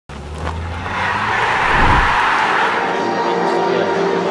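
Intro music for a channel logo sting: a noisy whoosh swells up to a peak about two seconds in, then gives way to steady held notes.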